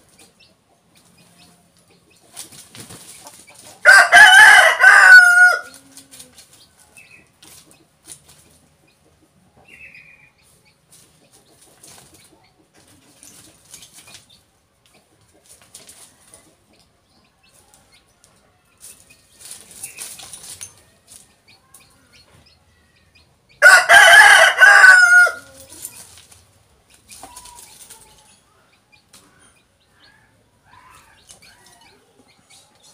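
Rooster crowing twice, each crow about a second and a half long, the second coming about twenty seconds after the first.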